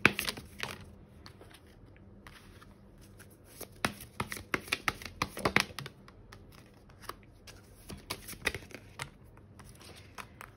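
Tarot cards being shuffled and drawn from the deck: quick papery flicks and snaps, a burst of them at the start, a dense run in the middle and a few scattered ones near the end, as cards are dealt out onto the table.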